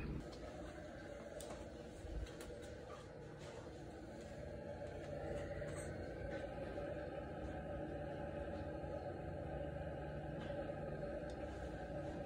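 Faint steady room noise, with a few soft clicks and a light handling bump about two seconds in.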